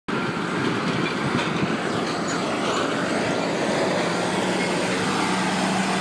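Autocar roll-off truck's diesel engine running, a steady noisy rumble with a low steady hum coming in about halfway through.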